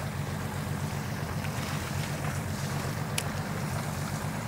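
A boat's motor running steadily low, under a steady hiss of wind and water.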